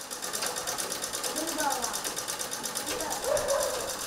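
Black cast-iron domestic sewing machine stitching fabric, its needle mechanism ticking in a fast, even rhythm.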